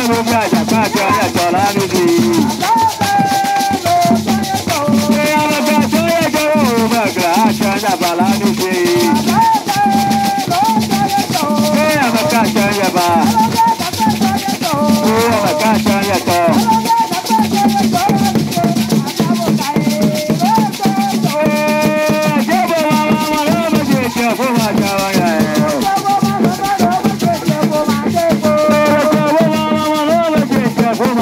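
Agbadza, Ewe drum-and-song music: a group sings over dense shaking of gourd rattles and hand-played drums with hide heads, in a steady driving rhythm.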